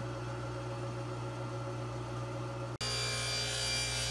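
Jointer running between passes, its motor and cutterhead giving a steady hum with no wood being cut. About three seconds in the sound breaks off abruptly and a table saw is heard running idle, a similar steady hum with more hiss.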